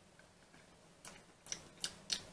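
Lips smacking together while tasting a freshly applied sugar lip scrub: three faint, short clicks in the second half.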